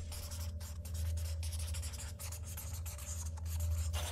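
The quiet tail end of a hip-hop track: a low bass tone holds under a scratchy, crackling noise that comes and goes in irregular bursts.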